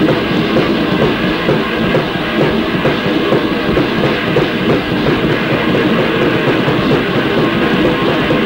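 Loud, dense, distorted lo-fi hardcore punk music, a steady wall of sound with no breaks.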